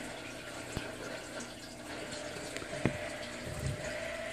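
A steady faint hiss with a couple of light clicks, about a second in and near three seconds, of a metal fork against a small plastic turtle tank.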